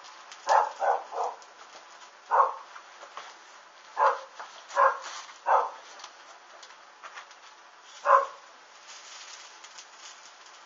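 A series of short animal calls, about eight of them spaced irregularly, with a faint steady background between them.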